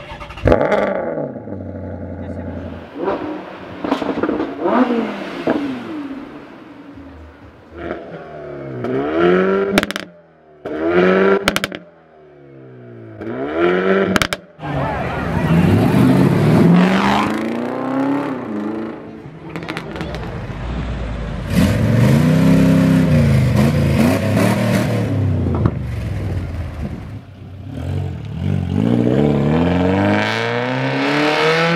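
Car engines revving hard in a string of short clips of different cars cut together, including a classic Mercedes-Benz rally car. The revs climb and fall again and again, with sudden breaks between clips about ten to fifteen seconds in and a long spell of high revving in the second half.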